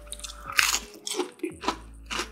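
Close-up mouth sounds of a person biting into and chewing a crisp fried mushroom-and-cheese bite. There are several short crunches, and the loudest comes a little past half a second in.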